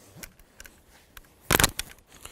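Light clicks and rustles of an AR-15 and its sling hardware as the rifle is slung over the head onto the chest, with one short, sharp clatter about one and a half seconds in.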